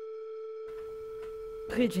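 Background music holding one steady, plain tone. Faint room noise comes in just under a second in, and a voice starts speaking near the end.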